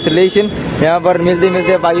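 A man talking, with a steady hum of street traffic behind the voice.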